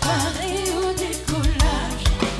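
Live band playing a pop song: a wavering sung melody over bass and a drum kit.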